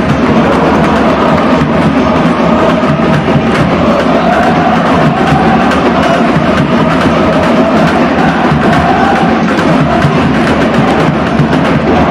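A stand of football supporters singing a wordless 'oh-oh-oh' chant in unison over steady drumming.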